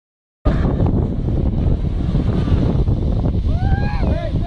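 Heavy wind buffeting the microphone, a loud rumbling hiss that hides almost everything else. Near the end a person lets out one long, held shout.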